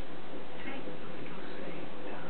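A steady hiss with no distinct events.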